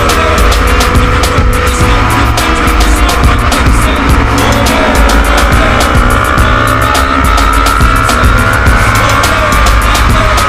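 Background music with a heavy bass beat laid over a Yamaha R25's parallel-twin engine running at speed, its pitch slowly climbing and dipping.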